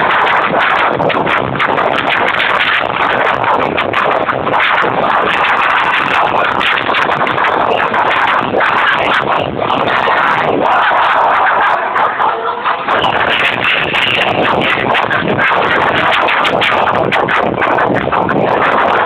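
Loud electronic dance music played over a rave tent's sound system.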